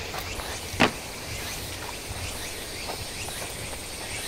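Steady outdoor background with a low rumble, broken by one sharp click about a second in and a few faint ticks.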